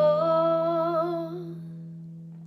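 A woman's voice holds one note with vibrato, fading out about a second and a half in, over an acoustic guitar chord that is left ringing and slowly dies away.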